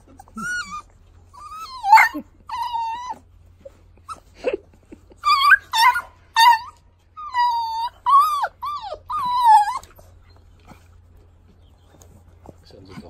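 Beagle puppies whining, a dozen or so short high-pitched whines that bend up and down in pitch, the loudest about two seconds in, stopping near the end. They are whining for a ball held just out of reach.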